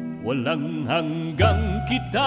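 Tagalog worship song: a voice sings a wavering melodic line over sustained chordal accompaniment. A deep bass note comes in a little past halfway.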